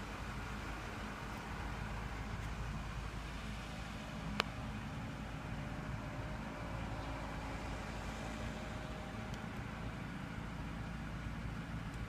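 Ford truck's engine idling steadily with its electrical loads off, held at idle for an alternator output test. One sharp click about four and a half seconds in.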